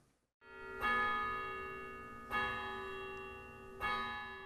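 A bell struck three times, about a second and a half apart, each stroke ringing on with a slowly fading tone.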